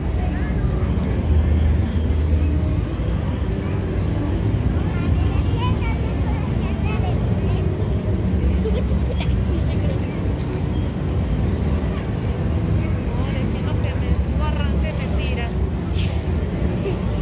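Outdoor fairground crowd: scattered background voices of passers-by over a steady low rumble.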